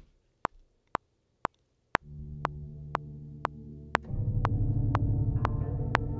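Logic Pro X metronome clicking twice a second: four clicks alone as a count-in. A low sustained synthesizer pad then enters about two seconds in, and a fuller, louder synth layer from Omnisphere's 'Hybrid – Clearing Zones' patch joins about four seconds in, with the clicks going on underneath.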